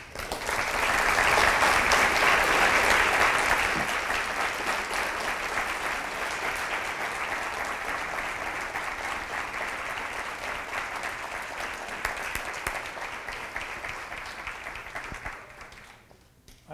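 Audience applauding: the applause swells within the first second, is loudest over the next few seconds, then slowly dies away.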